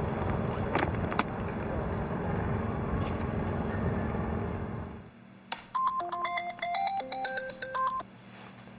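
Steady outdoor wind and water noise, which cuts off about five seconds in. Then a mobile phone ringtone plays: a melody of bright chiming notes, the sign of an incoming call.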